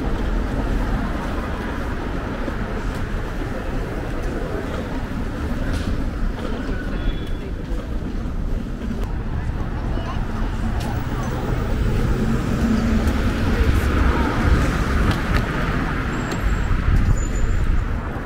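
City street ambience: steady road traffic from passing cars, with passersby talking.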